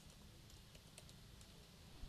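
A few faint computer keyboard keystrokes, soft separate ticks against near silence.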